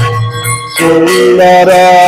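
Devotional kirtan at an aarti: a khol drum beating with a steady metallic ringing over it. A man's voice comes in singing loudly a little under a second in.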